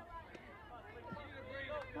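Faint voices of spectators talking in the background over low outdoor noise, with a voice rising again near the end.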